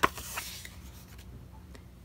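A sheet of scrap paper rustling as it is handled and moved away, with a sharp crackle at the start. It is loudest in the first half second, then fades to faint room sound.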